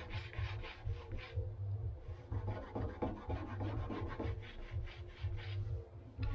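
Cloth rubbed hard back and forth on the painted trunk lid of a Mercedes W203, a quick scratchy rhythm of strokes about four a second with a short pause about one and a half seconds in. It is scrubbing at the marks left where the badge letters were removed, which no longer come off by rubbing.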